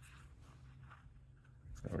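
Faint scraping and light taps of a gloved hand handling a small brass pipe fitting on a steel welding table, over a low steady hum.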